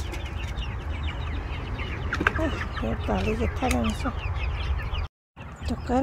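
A flock of young chickens peeping and clucking as they feed, with many short high chirps and a few longer wavering calls. The sound drops out completely for a moment about five seconds in.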